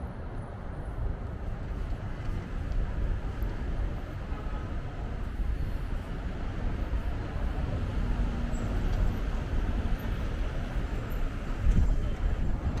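Outdoor city ambience: a steady low rumble of road traffic with buses, swelling briefly near the end.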